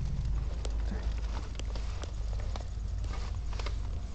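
Light, irregular clicks and knocks of things and the phone being handled inside a car, over a steady low rumble.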